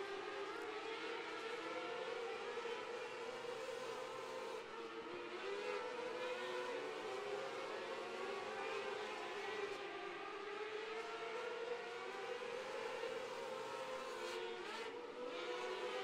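A field of micro sprint cars with 600cc motorcycle engines racing at high revs, heard together as a steady, layered whine whose pitch keeps rising and falling as the cars go through the turns and down the straights.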